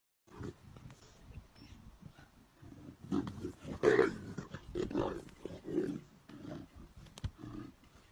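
Leopards fighting, calling out in a series of short, loud bursts, the loudest about four seconds in, with a sharp click just after seven seconds.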